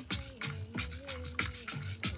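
Djembe-style hand drum and a handheld stick rattle played together in a steady beat, about three strokes a second, under a held, wavering note.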